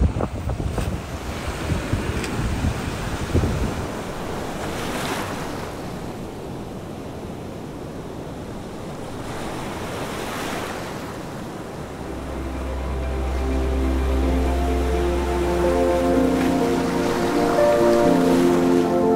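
Small surf washing onto the beach, with wind buffeting the microphone in the first few seconds. Soft ambient music with a deep held note fades in over the last third.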